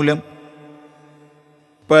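A man chanting Sanskrit verses in a sung recitation. A held note ends just after the start and fades out. After a quiet pause the next line begins near the end.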